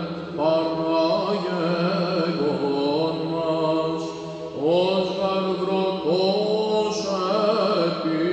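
Male cantor chanting Byzantine chant solo over a steady held low drone, the ison. The melody winds in ornamented melismatic turns. It breaks for a breath a little past halfway, and the new phrases then enter with upward slides.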